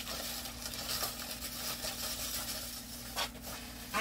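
Plastic packaging rustling and crinkling as store items are handled and set down, with a few sharper crinkles near the end. A steady air-conditioner hum runs underneath.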